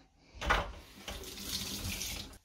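Kitchen tap running into a stainless steel sink, with water splashing over wetted hands. The flow starts with a short rush about half a second in and then runs steadily.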